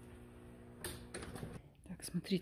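Faint steady hum, with a few light clicks starting about a second in.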